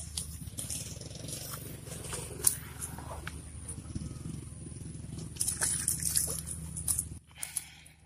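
Rustling of grass and a mesh fish keepnet being pulled in at the water's edge. There are scattered clicks, one sharp click about two and a half seconds in, and a busier stretch of rustling near the end, over a low steady hum.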